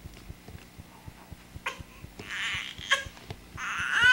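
A three-month-old baby's vocal sounds: soft breathy exhalations and small mouth clicks, with a rising-and-falling high coo starting right at the end.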